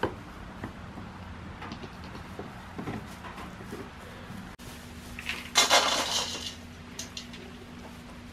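Feed poured from a bucket into a stainless steel bowl: a rattling hiss lasting about a second, a little past the middle. Before it, light taps and rustles of goats moving in straw bedding.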